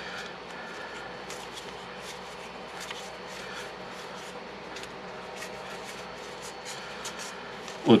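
A deck of playing cards being handled and thumbed through by hand: many short, light clicks and slides of card edges over a faint steady room hum.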